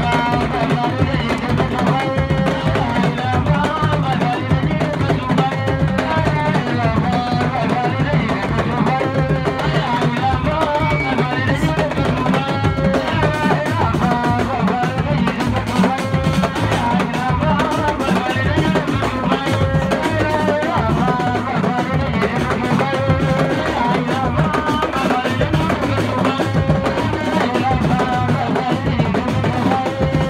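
Music led by steady, dense drumming and percussion, with a wavering melodic line over it.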